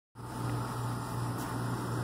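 A steady low mechanical hum with an even hiss behind it, unchanging throughout.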